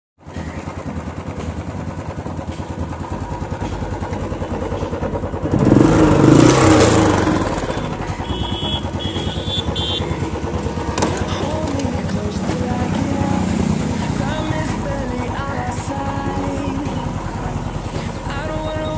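Royal Enfield Classic 350's single-cylinder engine idling with a steady, even beat, briefly revved and falling back to idle about six seconds in.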